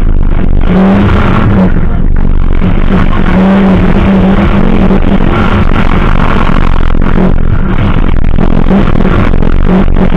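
Safari rally car's engine running hard at high revs as it drives over rough, muddy ground. The sound is loud and overloaded, with a steady engine tone that drops out and returns several times.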